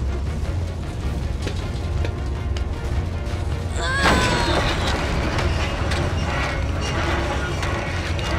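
Animated sound design for a war airship: a steady low engine rumble under dramatic score music. About four seconds in a girl gives an effort cry, and a louder burst of metal and mechanical noise follows as the airship's rudder is bent by metalbending.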